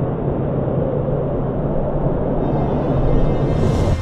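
Cartoon sound effect: a low, rumbling, wind-like noise that starts suddenly and continues loud and steady, swelling into a rising airy whoosh near the end.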